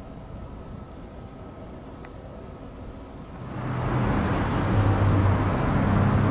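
Quiet street ambience, then a motor vehicle's engine and road noise swell up about three and a half seconds in and hold steady.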